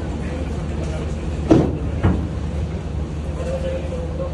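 Steady low drone of ship's machinery, with two short thumps about a second and a half and two seconds in.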